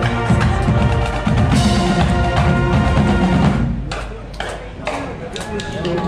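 Marching band of brass and drums playing as it passes: full brass chords over steady drumbeats. About two-thirds of the way through, the horns drop out, leaving scattered drum strikes, and they come back in at the very end.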